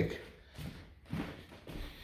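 A few soft footsteps on a hardwood floor, about one every half second.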